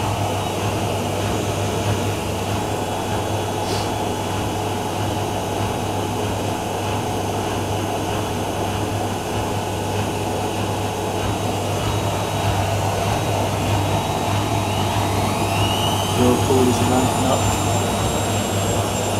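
Two front-loading washing machines spinning side by side: a Miele W5748 holds its final spin at 1200 rpm with a steady hum, while a Whirlpool AWM 1400 makes a short spin burst of about 500 rpm. Near the end a motor whine rises in pitch and then levels off as a drum speeds up.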